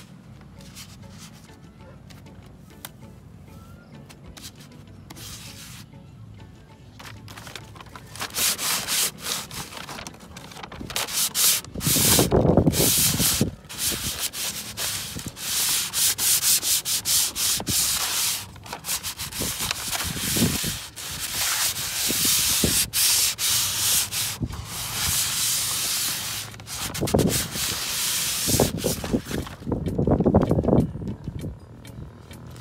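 Skateboard grip tape sheet rubbing and scraping as it is handled and its paper backing peeled off: a rough, sandpaper-like rasping. It is faint at first and becomes loud and nearly continuous after the first several seconds, with a few heavier handling bumps.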